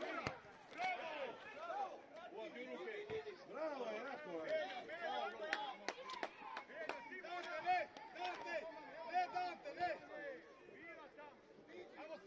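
Indistinct shouts and calls from players and people on the touchline of an outdoor football pitch, overlapping, with no clear words, and a few short sharp knocks among them.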